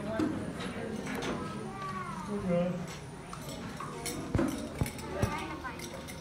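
Indistinct voices of people talking, with three sharp knocks in quick succession near the end.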